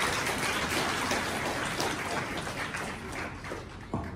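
Audience applause in a hall, a dense patter of many hands clapping that slowly dies away.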